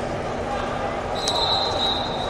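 Steady babble of many voices in a large indoor hall. A little over a second in, a long, high, steady tone starts.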